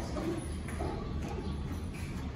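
Footsteps of a man and a dog walking on the concrete floor of a parking garage, over a steady low hum.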